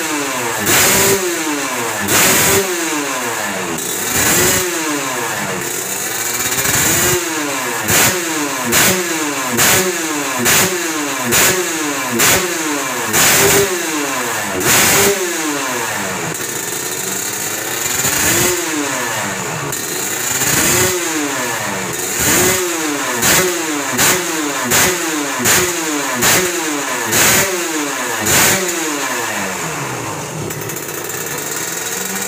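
A grasstrack motorcycle's two-stroke Kawasaki Ninja 150 engine is being free-revved on the stand during tuning. The throttle is blipped roughly once a second, the pitch rising and falling each time, with a short steadier stretch near the middle and quicker blips towards the end.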